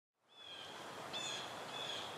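A steady hiss of outdoor ambience fades in from silence. Over it, three short, high, flat whistled calls sound about two-thirds of a second apart.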